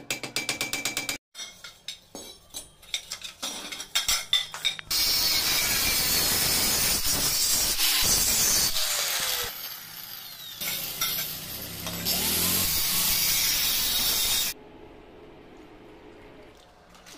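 A hammer knocks on a stainless steel railing post, first in a quick run of taps and then irregularly. About five seconds in, an angle grinder with a thin cutting disc cuts a stainless steel tube: a loud, steady cutting noise that dips briefly in the middle and cuts off sharply near the end.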